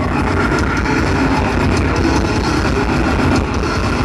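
Death metal band playing live through a stage PA: loud, dense distorted guitar and bass over fast, continuous drumming.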